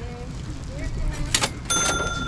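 A sharp click, then near the end a metallic, bell-like ring that keeps sounding, over faint voices and a low outdoor rumble.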